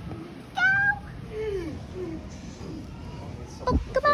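A short, high-pitched, meow-like vocal cry about half a second in, followed by softer falling voice sounds, with a brief bump near the end.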